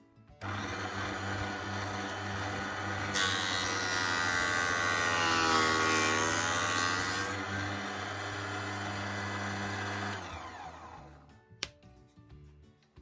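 Proxxon DH 40 benchtop thickness planer switched on, its motor starting abruptly and running with a steady hum. About three seconds in a wooden board is fed through and the cutterhead planes it for about four seconds, the motor's pitch sagging under the load. It then runs free again and is switched off about ten seconds in, winding down.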